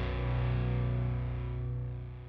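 Closing held chord of a heavy metal song on distorted electric guitar, ringing on with no new notes and fading away as the song ends.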